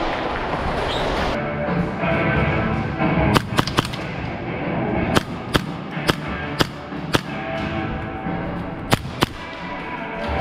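About ten sharp single cracks of airsoft gunfire, spaced about half a second apart, starting a few seconds in and ending near the end. Background music plays steadily underneath.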